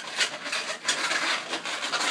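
Inflated latex 260 modelling balloons rubbing against one another, a continuous uneven rasping, as a woven balloon hat is gripped and worked by hand.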